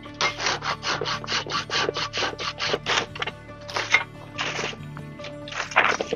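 Folding pruning saw, a Silky BigBoy, cutting through a tree branch in quick back-and-forth strokes, about five a second for some three seconds, then a few single strokes. Background music runs underneath.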